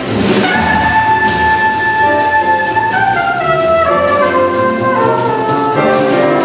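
Small jazz band playing live: a trumpet holds one long high note over bass, piano and drums, then falls away in a descending run of notes. A cymbal crash comes at the very start.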